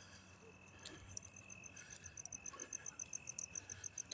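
A cricket chirping faintly in quick, even high pulses, about eight a second, starting about a second in, over a thin steady high whine.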